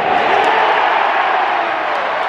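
Large stadium crowd of football spectators: a loud, steady din of many voices cheering.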